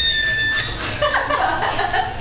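A rubber balloon squealing as air is let out through its stretched neck: a high, steady tone that falls slightly in pitch and stops about half a second in. Laughter follows.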